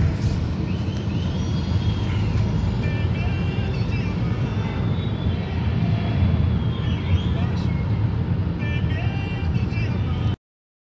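Steady low road and engine rumble inside the cabin of a moving Ford Fusion taxi, with faint voices heard over it now and then.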